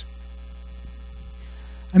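Steady low electrical mains hum in the microphone and sound-system chain, with a voice coming back in at the very end.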